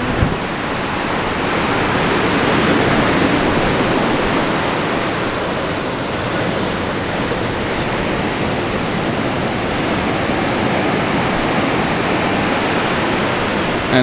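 Ocean surf: a steady, loud wash of waves breaking on the beach, swelling a little a few seconds in.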